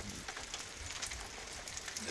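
Light wind on the microphone outdoors: a low fluttering rumble under a faint, even crackling hiss.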